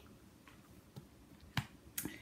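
Quiet room tone in a pause, broken by a faint tick about a second in and a single sharp click about one and a half seconds in.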